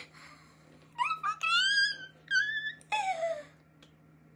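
A woman's high-pitched squeals of excitement, several in a row with the pitch sliding up and down, the last one falling away.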